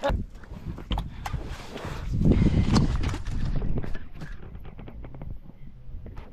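A small hooked fish splashing at the water's surface as a spinning reel is cranked in, with scattered knocks and clicks; the splashing is loudest a couple of seconds in.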